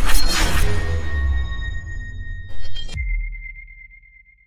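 Electronic logo sting for a channel outro: a loud whooshing hit over a deep rumble, a second hit about two and a half seconds in, then a single high ringing tone that fades away.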